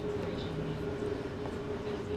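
Evaporative (swamp) cooler running with a steady hum, with a few faint ticks from rubber window trim being worked in with a screwdriver.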